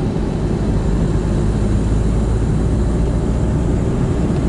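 Steady road noise inside a moving vehicle: a low engine and cabin drone with tyre hiss on wet tarmac.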